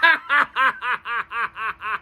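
A man laughing: a steady run of short "ha" pulses, about four a second, each falling in pitch, easing off slightly toward the end.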